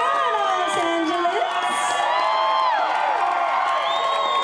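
A concert audience cheering, with many voices screaming and whooping at once.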